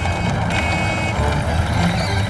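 Low rumble of a vehicle rolling in, with a high, steady beeping tone from about half a second to a second in.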